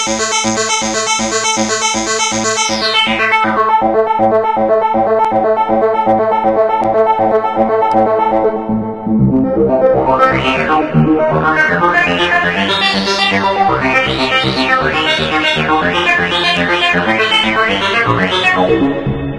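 Korg Nu:Tekt NTS-1 digital synthesizer playing a fast run of repeating notes. About three seconds in the filter cutoff is turned down and the sound goes dull; from about nine seconds in the cutoff is swept up and down again and again, so the notes brighten and darken in waves.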